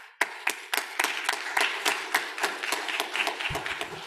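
Audience applauding: many hands clapping, with individual claps standing out, starting to die down near the end.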